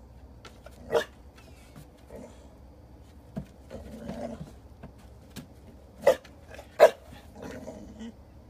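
A pit bull barking: one sharp bark about a second in and two more close together near the end, with softer sounds between. The barking is the dog's frustration while working out a retrieve, which the trainer treats as a precursor to the behavior he wants.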